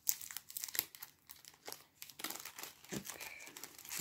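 Crinkling and rustling of a packet being handled as paper tags and stamps are slipped back into it: a quick run of small, dry crackles.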